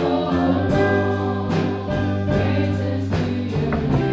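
Live gospel worship song played by a church band: women singing held notes over electric guitars, keyboard and drums.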